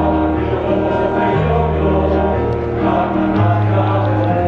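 Mixed choir singing sustained chords with electronic keyboard accompaniment, over a bass line that moves every second or so.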